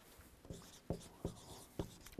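Faint scratching of writing, with four soft ticks spread across two seconds.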